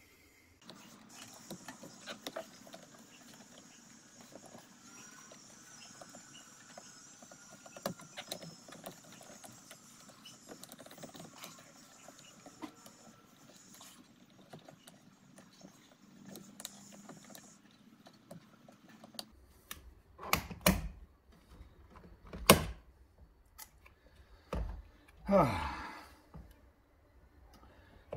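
Screwdriver working at the release clips of a Toyota Supra's steering-wheel airbag: faint scraping and handling for most of the time, then several sharp clicks and knocks in the last eight seconds, one with a short squeak, as the airbag module comes free.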